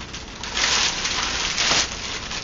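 Thin plastic bag rustling and crinkling as a rifle is slid out of it, a dense papery rustle that swells about half a second in and eases near the end.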